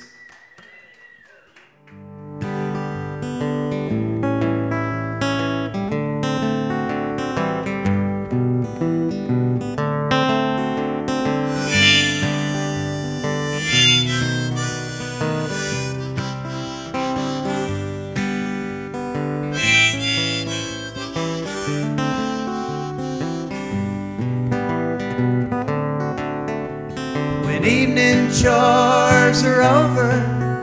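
Harmonica and strummed guitars playing an instrumental country tune, starting about two seconds in after a brief quiet moment; the harmonica is played from a neck rack by the acoustic guitarist and comes forward in brighter phrases now and then.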